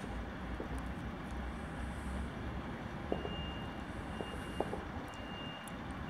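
SA109 diesel railbus pulling slowly out of the station, its engine a low steady rumble, with a few light clicks. A thin high tone comes and goes three times in the second half.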